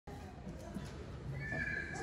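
Low hum of an audience seated in an auditorium, with a few faint ticks. About one and a half seconds in comes a brief, faint high-pitched tone.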